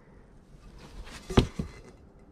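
Brass chamberstick candle holder handled and turned over in gloved hands: quiet handling noise with one short knock a little past the middle, followed by a fainter one.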